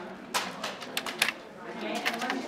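Sheets of cardstock being handled: a quick, irregular run of sharp clicks and rustles lasting about a second.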